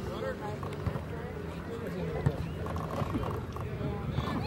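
Overlapping voices of spectators and players chattering and calling across a soccer field, with a short sharp thump about two seconds in.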